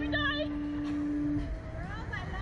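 Girls' high-pitched nervous laughter and squeals, over a steady low electric hum that cuts off suddenly about one and a half seconds in.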